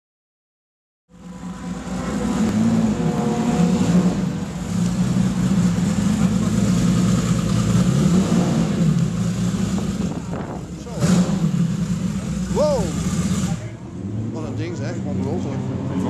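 Ferrari 250 GTO's 3.0-litre V12 engine running at idle, starting about a second in, with people talking over it.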